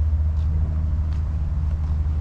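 Infiniti Q50's twin-turbo VR30 V6 idling: a steady, even low rumble.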